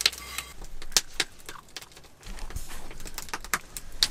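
A few sharp clinks and taps of a cast iron pan and eggs being handled at a camp stove, the loudest near the start and about a second in, with a steady low hiss from about halfway.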